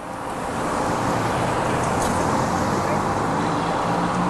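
Road traffic noise: a motor vehicle running close by, its sound swelling over the first second and then holding steady.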